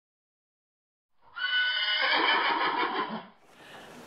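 A horse neighing once for about two seconds, starting a little over a second in.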